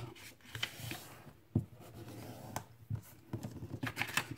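A sheet of patterned paper being folded in half and creased by hand against a tabletop, then opened: soft rustling and scraping, with scattered small clicks and one sharper click about one and a half seconds in.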